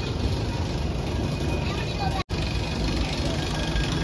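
Steady low rumble of outdoor background noise. It cuts out abruptly for an instant a little over two seconds in.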